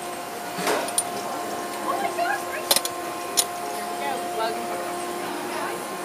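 Chain swing ride running: a steady mechanical hum with a few sharp clicks.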